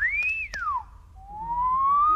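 A bar of soap squeaking on mirror glass: a short squeak that rises and falls in pitch, then, from about a second in, a longer squeak that climbs steadily.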